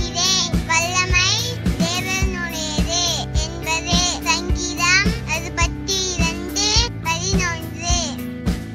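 A high voice singing a melody with vibrato over a backing track with sustained chords and a steady beat about twice a second.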